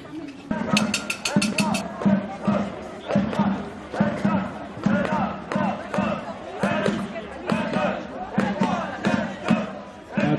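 A steady drum beat, about two strokes a second, under the voices of a crowd in the street. About a second in comes a quick run of high, jingling ticks.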